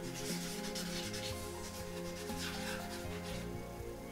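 A felt-tip marker writing on flipchart paper: several short rubbing strokes, over quiet background music with held notes.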